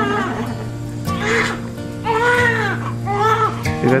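Newborn baby crying in short rising-and-falling wails, three of them about a second apart, over background music with long held notes.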